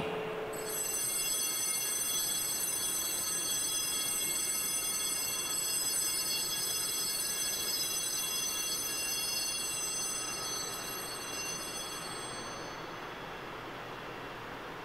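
Altar bells ringing at the elevation of the chalice during the consecration at Mass: a high, sustained ringing of several tones that begins about half a second in and fades away near the end.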